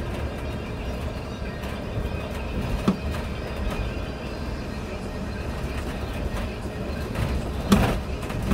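City bus driving along a street, a steady low engine and road rumble with occasional knocks and rattles, the loudest near the end.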